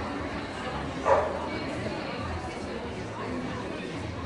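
A golden retriever barks once, briefly, about a second in, over a steady murmur of people talking.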